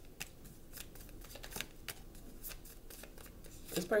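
A tarot deck shuffled by hand: the cards give a run of quick, irregular clicks and flicks.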